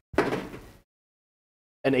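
A single sudden knock or thump that dies away within about half a second, followed by silence.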